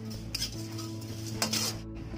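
A metal spoon scraping and stirring whole spices dry-roasting in a steel kadai: two scrapes, a short one near the start and a longer one about a second and a half in.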